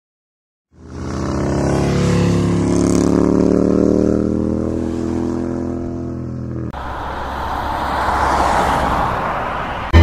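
Several motorcycle engines running as a group of bikes rides past, their note sinking slightly as they go by. It begins abruptly about a second in. Near the seven-second mark it cuts to a rougher, noisier engine sound.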